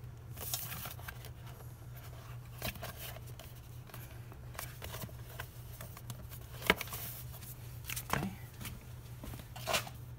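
Hard plastic motorcycle airbox side cover being wiggled and pushed against its stuck retaining clips: scattered scrapes, rubs and clicks, the sharpest click about two-thirds of the way through. A steady low hum runs underneath.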